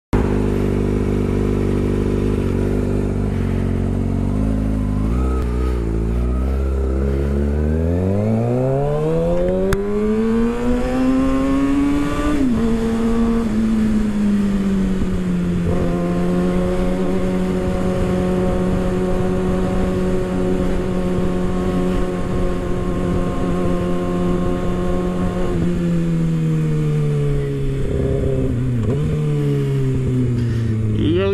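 Kawasaki Ninja ZX-6R 636 inline-four engine idling, then revving up with a long climb in pitch that drops sharply about twelve seconds in. It then holds a steady pitch for around ten seconds and falls away as the bike slows near the end.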